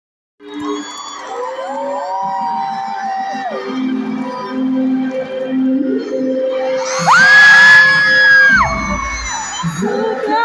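Live band's intro in an arena, held synth chords, with fans screaming over it in long high cries. The loudest is one long high scream about seven seconds in.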